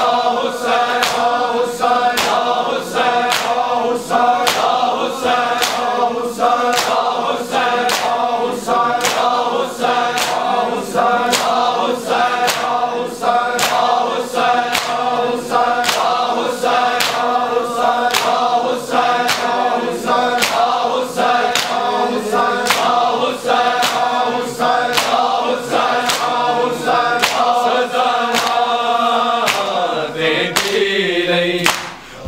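A crowd of men chanting a noha in unison while beating their chests in matam, the hand slaps landing together in a steady rhythm roughly every two-thirds of a second.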